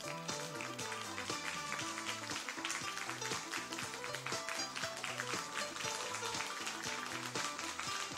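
Background music with a steady beat, played over the hall's sound system as an actor walks on stage.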